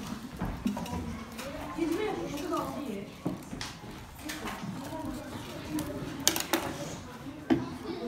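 Children's voices chattering in a room, mixed with the clicks and knocks of objects handled on a table, the sharpest a few clicks in the second half.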